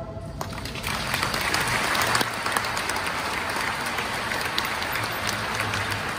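Audience applause that builds over the first second and then goes on steadily, with many individual claps.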